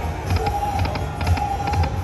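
Dragon Link 'Happy & Prosperous' video slot machine playing its reel-spin music: a steady held tone over a low pulsing beat, with a few light ticks as the reels turn and stop.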